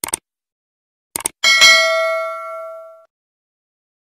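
Subscribe-button animation sound effect: a quick pair of mouse clicks, another pair about a second later, then a bright bell ding that rings out and fades away over about a second and a half.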